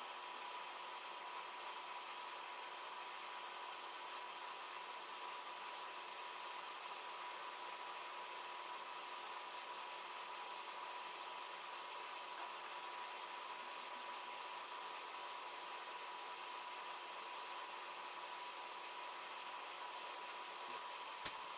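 Faint steady hiss with a thin, steady high tone running through it, unchanging throughout; no handling or rustling sounds stand out.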